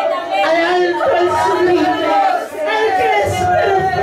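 A woman's high-pitched voice praying aloud into a handheld microphone, continuous and impassioned, with no words the recogniser could make out.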